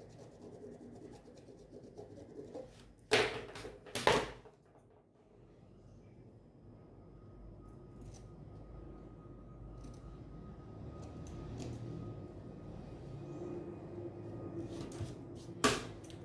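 Two sharp knocks about a second apart, about three seconds in, then fabric scissors cutting through cotton fabric along a marked line, with a low scratchy shearing and a few small clicks.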